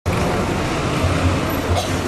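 Street traffic noise: vehicle engines running with a steady low rumble.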